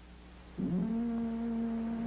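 Electronic synthesizer music: about half a second in, a single note slides up and then holds steady.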